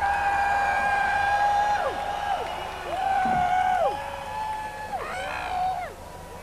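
Electric guitar holding a single high note three times, each sliding up into a steady pitch and dropping away at the end. The first is held about two seconds, the second about one, and the third is shorter, with no band playing underneath.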